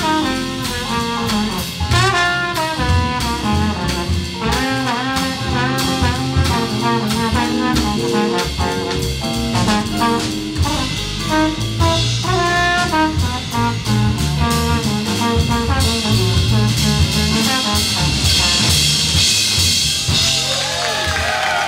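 Live jazz combo: a trombone plays melodic lines into the microphone over walking double bass and drum kit. The cymbals wash louder over the last few seconds.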